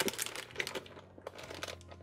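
Plastic zip bags and anti-static component bags crinkling as hands rummage through them in a parts organizer, densest in the first second and then thinning out.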